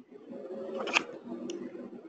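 A soft, low voice sound in a speaker's pause, with two sharp clicks about half a second apart near the middle.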